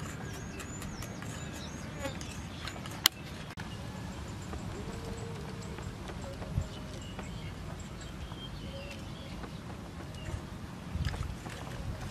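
Outdoor ambience: a steady low wind rumble with faint high bird chirps, a single sharp click about three seconds in, and a few light knocks near the end from kitchen utensils being handled.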